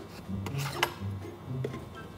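Plastic screw lid of a peanut butter jar being twisted open: a rasping rub of lid on jar, with a sharp click just under a second in.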